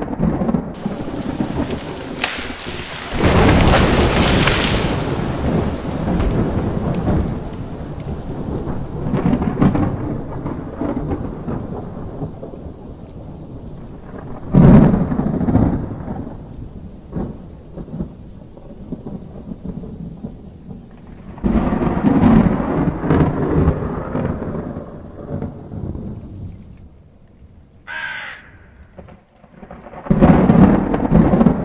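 Thunder rumbling in several long rolls, the loudest a few seconds in, another about fifteen seconds in and a third at about twenty-two seconds, with a single short crow caw near the end.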